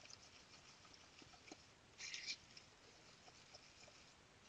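Metal teaspoon stirring wet filling plaster in a bowl: faint scattered clicks and scrapes of the spoon against the bowl, with one brief, louder scrape about two seconds in.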